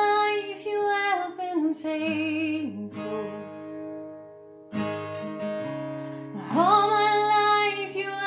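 A woman singing a slow worship song to acoustic guitar strumming. Around the middle the voice stops and the guitar rings out and fades, then a new strum comes in and she sings again near the end.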